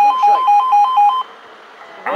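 Railway level-crossing audible warning sounding a rapid two-tone yodel, alternating quickly between two pitches, warning that another train is approaching. It cuts off suddenly about a second in.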